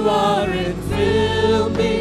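Two women singing a contemporary worship song in harmony into microphones, backed by a live band with held chords.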